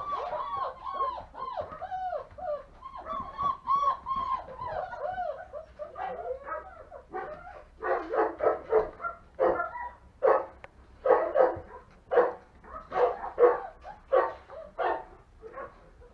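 Five-week-old German Shepherd puppies whining in a run of high, arching whimpers. About halfway through they break into short yaps, about two a second, louder than the whining.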